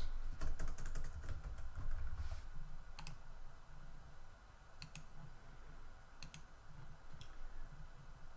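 Computer keyboard keystrokes, a quick run of them in the first second or so, followed by a few single mouse clicks spaced a second or more apart.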